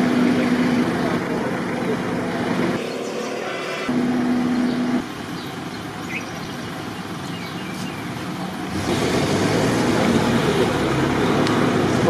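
Ambulance and fire truck engines running amid outdoor street noise, with a steady hum in some stretches. The sound changes abruptly several times where the footage is cut.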